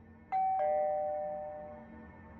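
Two-note doorbell chime, ding-dong: a higher note and then a lower one a fraction of a second later, each ringing out and fading away over about a second and a half.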